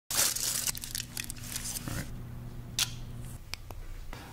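Aluminium foil crinkling and rustling as it is handled, loudest in the first two seconds, over a low steady hum that stops about three and a half seconds in. A few sharp clicks near the end.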